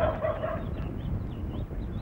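A short animal call at the very start, then faint high chirping, over a steady low rumble of old film-soundtrack noise.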